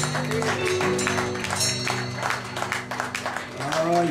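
Live band playing, with sustained held keyboard and bass chords that shift about a second in, under steady drum and cymbal hits. A man's voice starts talking over the music near the end.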